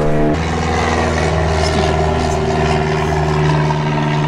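A loud, steady engine drone with a low hum, its tone shifting slightly a moment after the start.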